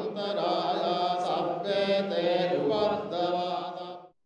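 Buddhist devotional chanting by voices holding long, steady tones, which cuts off suddenly at the end.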